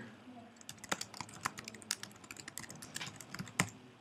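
Typing on a computer keyboard: an irregular run of light key clicks, starting about half a second in and stopping shortly before the end, as a short phrase is typed.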